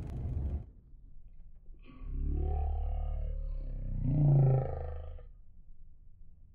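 A motor vehicle's engine accelerating, with a low rumble and two rising sweeps in pitch; the second sweep is louder and peaks about four seconds in before the sound fades.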